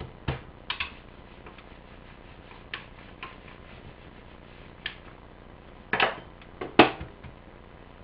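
Scattered light taps and knocks of hands and dough on a cutting board while dough is pressed out. Two louder knocks come about six and seven seconds in as a rolling pin is handled.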